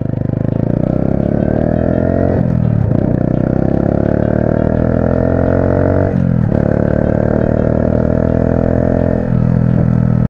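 Honda Super Cub C125's single-cylinder engine under way, its pitch climbing as the bike accelerates and dropping briefly three times as it shifts up through the gears.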